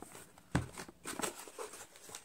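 Cardboard box being handled: a knock about half a second in, then irregular rustling and scraping as hands reach inside for the wooden puzzle pieces.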